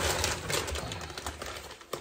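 Plastic bag of potting soil crinkling and rustling as it is picked up and handled, loudest in the first second and tapering off.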